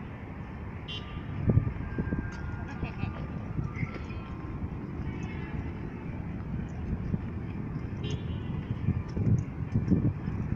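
Outdoor urban ambience: a steady low rumble with a few louder swells, and faint distant voices.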